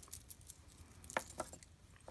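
A few faint clicks of glass beads and a metal chain knocking together as a beaded dangle is picked up and handled.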